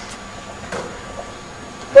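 Quiet, hollow gymnasium room tone with a few faint knocks from the court.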